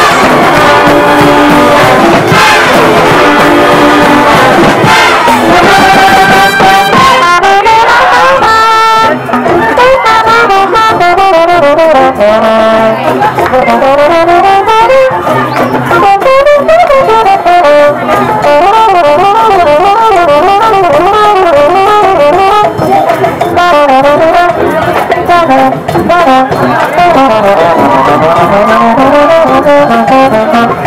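Brass band with drums playing a Latin tune. After about nine seconds a single trombone takes an improvised solo, a wavering line with slides up and down, over the drums and band.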